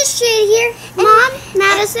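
High-pitched voices of a child and a woman calling out in drawn-out, sing-song phrases, several in a row.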